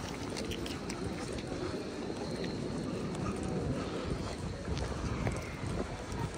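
Busy city-square ambience: a steady low rumble of traffic and wind on the microphone, with faint voices of passers-by.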